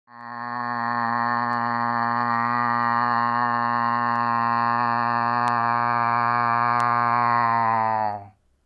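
A man imitating a bagpipe with his voice: one low, steady drone held without a break, swelling in over the first second.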